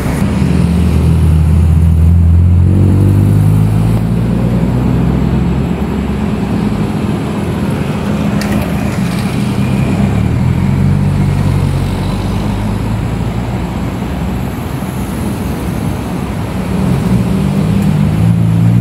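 Motor traffic passing on a highway: a low engine drone that swells and fades as vehicles go by, over steady road noise. A single sharp click sounds about halfway through.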